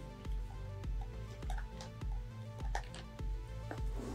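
Background music with held notes over a pulsing bass, with a few short, sharp clicks scattered through it.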